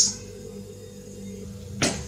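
Low steady electrical hum of room tone, with one short sharp click or swish near the end.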